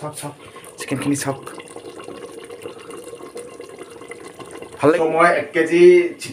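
Metal ladle stirring and scraping food in an aluminium pressure cooker, over a steady hiss, followed by a man's voice near the end.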